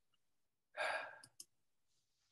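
A man's sigh: one breathy exhale that fades over about half a second, followed by a couple of faint clicks.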